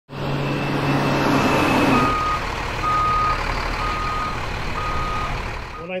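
A heavy vehicle's engine runs with a steady rumble, and from about two seconds in its reversing alarm beeps about once a second, each beep a single steady tone about half a second long.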